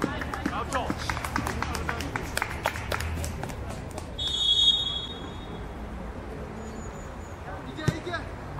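Referee's whistle blown in one short, steady blast about four seconds in, the loudest sound here. Before it come players' shouts and a quick run of sharp clicks; near the end there is a single sharp thump.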